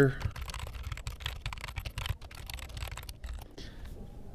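Typing on a computer keyboard: a quick, irregular run of key clicks that thins out near the end.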